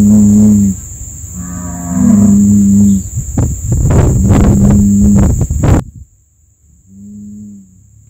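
A bull mooing in long, low calls: three loud ones, then a fainter fourth near the end. Between the calls comes a run of sharp crackles that stops suddenly about three-quarters of the way through.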